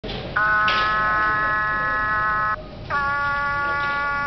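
Electronic voice box of a Christmas plush toy sounding two long, steady buzzy notes, each about two seconds, with a short break between them, as its mouth opens and closes.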